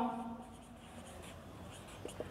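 Marker pen writing on a whiteboard: faint scratching strokes.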